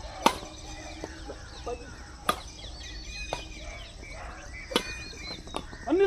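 Badminton rally: sharp cracks of rackets striking a shuttlecock, one every one to two seconds, with birds chirping throughout.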